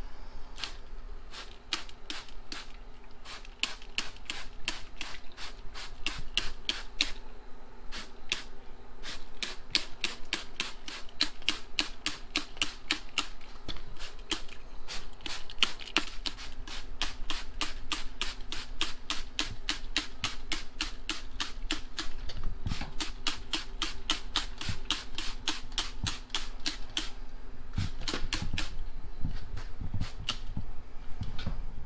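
A hand trigger spray bottle pumped over and over in quick succession, each squeeze a short click and spritz, spraying rust converter onto a rusty steel floor pan.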